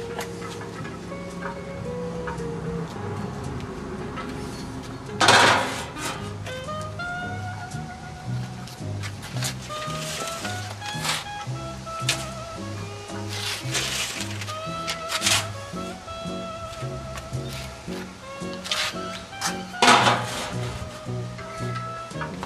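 Instrumental background music with a stepping melody over a rhythmic bass line. Two loud knocks cut through it, about five seconds in and near the end.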